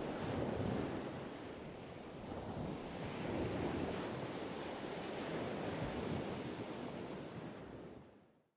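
Surf washing onto a shore: a steady rush of noise that swells, eases and swells again, with some wind.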